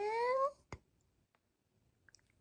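A woman's voice drawing out a long, rising "and" that ends about half a second in, followed by a single short click.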